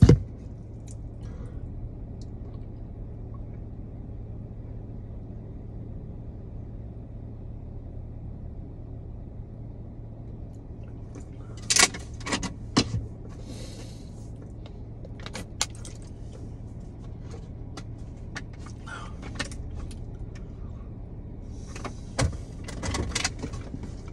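Steady low hum inside a car cabin with the engine idling. Short sharp clicks and rustles come about halfway through and again near the end.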